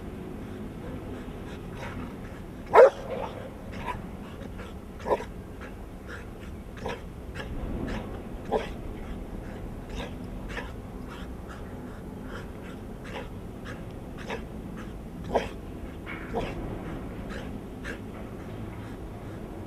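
Large black dog on a tether barking in single short barks spaced several seconds apart, the loudest about three seconds in, with fainter yips between them.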